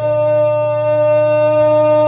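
A man holding one long, steady sung note over an acoustic guitar.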